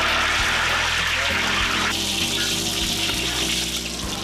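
Hot oil sizzling in a wok as food is deep-fried, a dense hiss that is loudest for the first two seconds and then thins. Steady low music plays underneath.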